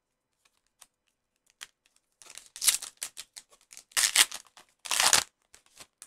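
A foil trading-card pack wrapper being torn open by hand and crinkled: a few faint clicks, then three loud crackling tears over the last few seconds.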